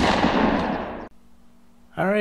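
A sudden loud burst, like a shot or explosion sound effect, that fades away over about a second, followed by a faint steady hum.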